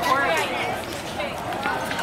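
Indistinct, fairly high-pitched voices talking in the background outdoors, no clear words.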